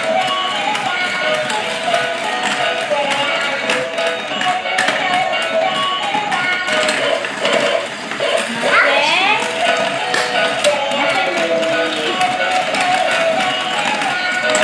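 Battery-operated dalmatian puppy staircase-and-slide toy running, playing its electronic tune over the rapid plastic clicking of the moving stairs and the puppy figures knocking down the slide.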